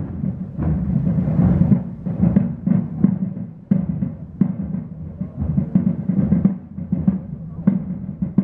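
Marching drums beating a steady cadence of repeated strokes.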